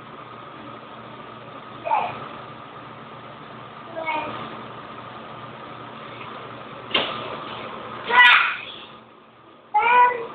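A few short, pitched, meow-like calls spaced a couple of seconds apart, the loudest and longest near the end, over a faint steady hum.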